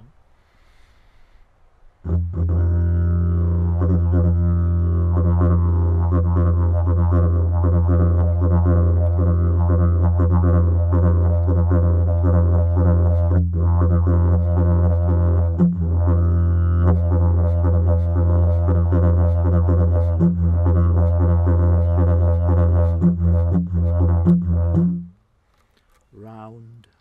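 Yidaki (didgeridoo) played in the Galpu clan style: a low, unbroken drone with many shifting overtones and a steady stream of rhythmic accents, played 'silky flowing'. It starts about two seconds in and stops about a second before the end.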